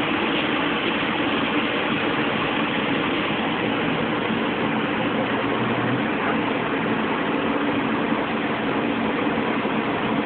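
A steady, unbroken mechanical hum and hiss, like a motor running.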